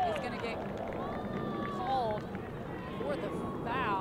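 Voices calling out across an open soccer pitch in several short shouts, over steady crowd and field noise.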